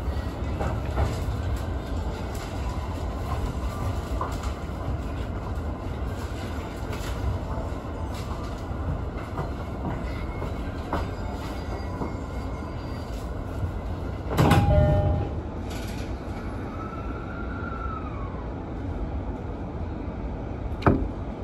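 Electric commuter train pulling away and running on the track, heard from the driver's cab: a steady low rumble with scattered clicks of wheels over rail joints and points. A brief louder burst comes about three-quarters of the way through.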